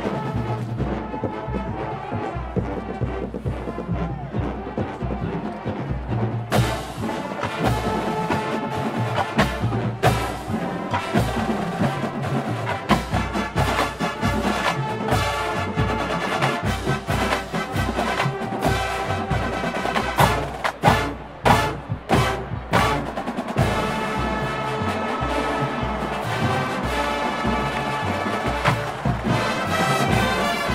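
Marching band playing, with drums keeping a steady beat under the brass. About twenty seconds in there is a run of loud accented hits with short breaks between them, then the full band holds sustained chords.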